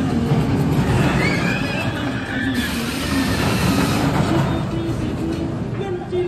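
Themed background music playing over the rumble of a Cobra's Curse roller coaster train running on its steel track close by. A high gliding wail about a second in.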